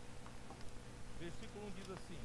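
Quiet pause in a hall: a faint steady electrical hum, with a faint voice now and then in the background.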